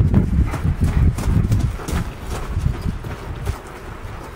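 A person's and a dog's footsteps crunching on gravel in a steady walking rhythm, over a low rumble that eases off near the end.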